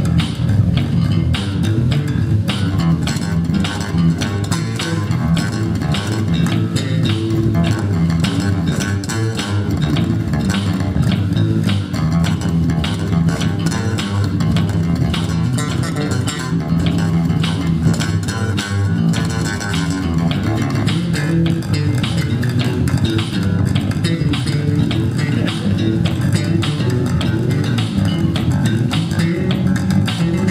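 Two electric bass guitars jamming together, a steady stream of fast plucked notes.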